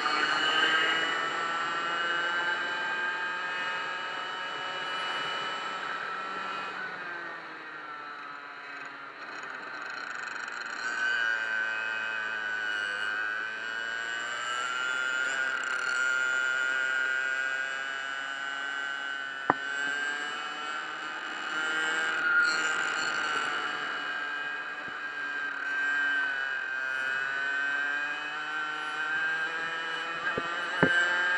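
Go-kart engine heard from an onboard camera, its pitch falling and rising with the throttle through the corners, lowest about a third of the way in. A short sharp click comes about two-thirds of the way through.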